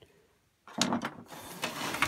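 A wooden workpiece being handled and moved over the workbench, a scraping, rustling rub that starts well under a second in and lasts about a second and a half.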